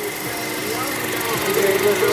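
A car engine idling steadily with a constant whine, while people talk in the background.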